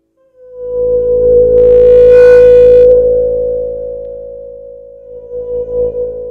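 La Diantenne 2.0, a self-built electronic instrument, starting a single held tone about half a second in out of silence. The tone brightens around two seconds, then slowly fades and wavers near the end.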